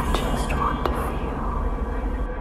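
Several whispering voices layered together over a steady deep drone.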